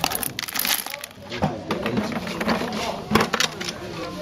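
Small hard pellets, the filling for aslatua gourd shakers, rattling and clicking as they fall from a hand into a plastic bucket. The clicks come irregularly, in a cluster about half a second in and again around three seconds in, with a short laugh at the start.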